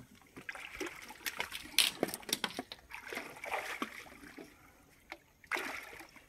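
Irregular splashing water: a hooked rohu thrashing at the surface close to the bank, and the angler wading into shallow water to land it.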